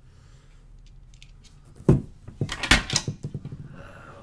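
Handling of a graphics card's power cable at an open PC case: plastic connector and cable clicks and knocks. A sharp knock comes about two seconds in, then a quick run of rattling clicks.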